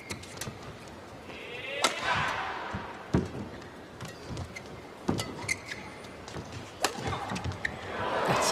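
Badminton rally: rackets striking the shuttlecock as sharp, separate hits every one to two seconds, over low arena crowd noise.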